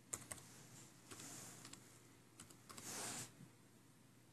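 Faint typing on a Lenovo laptop keyboard: a pair of quick key clicks at the start, then a few more scattered keystrokes.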